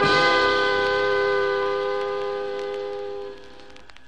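A jazz ensemble's closing chord is held and fades away, ending the song. It stops about three seconds in, leaving faint clicks of surface noise from a vinyl LP.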